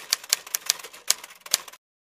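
A quick, uneven run of sharp, dry clicks, about six a second, that cuts off suddenly near the end.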